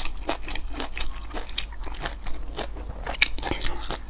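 A person chewing food close to the microphone: a quick, irregular run of wet clicks and soft crunches, with a sharper click about three seconds in.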